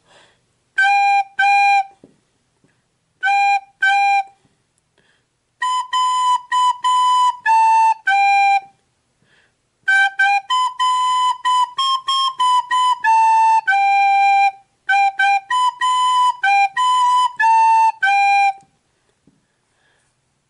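Solo recorder playing a simple beginner melody on G, A and B: two short notes and a rest, twice, then two longer phrases of separate, tongued notes. Some of the G's come out a little crackly from blowing too hard.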